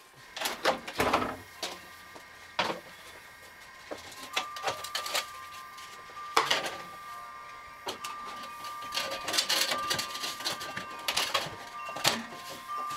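Plastic downspout parts and a flexible corrugated downspout pipe being handled and refitted. The sound is a run of irregular knocks, clicks and scraping of plastic, with a faint steady high tone through the second half.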